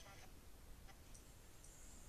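Near silence: faint hiss with a few soft clicks, one just under a second in.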